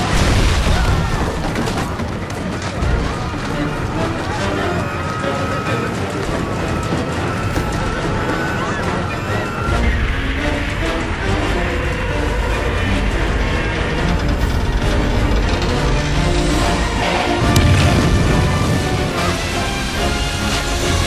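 Film soundtrack of an airliner cabin shaking apart in severe turbulence: continuous loud rumbling with booms and crashes under dramatic music, and voices in the mix. It swells about halfway through and again near the end.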